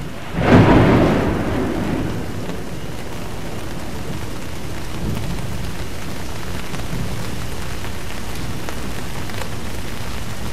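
A sudden thunderclap about half a second in, rumbling away over about two seconds, then steady rain.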